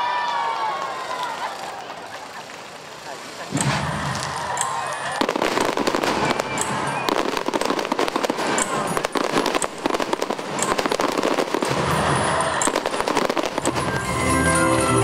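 A fireworks display: about three and a half seconds in, a dense, continuous run of rapid crackling and banging begins and keeps on to the end. Before it, crowd voices can be heard.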